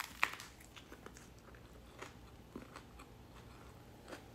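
Bite into a crisp lettuce wrap with a sharp crunch just after the start, followed by soft, scattered crunches of chewing.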